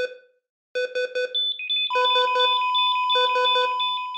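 Synthesized electronic beeps of an intro sound effect, in quick bursts of several pulses each. About two seconds in, a steady high tone joins the pulsing beeps and holds.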